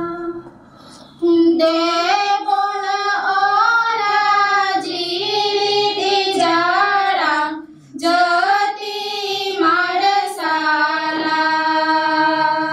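A group of young women singing in unison, a slow song of long held notes, with short pauses for breath about a second in and again near eight seconds.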